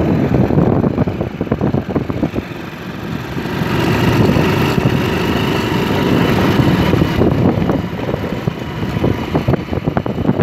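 Motor vehicle engine running with wind rushing over the microphone, briefly quieter and then louder again about three and a half seconds in.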